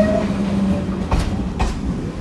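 Electric suburban commuter train running along a station platform: a steady low running sound with two sharp clacks of the wheels over rail joints just past a second in.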